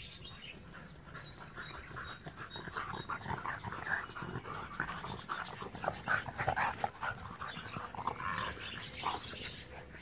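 Two dogs at play, making a run of short, irregular breathy noises and play sounds, busiest about halfway through.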